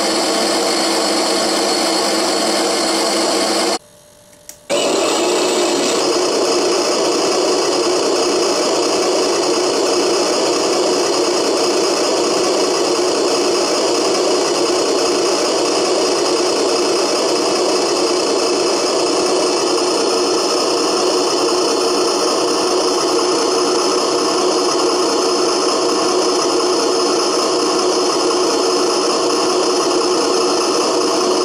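Homemade RC tractor running: a loud, steady mechanical hum and rattle that drops out for under a second about four seconds in.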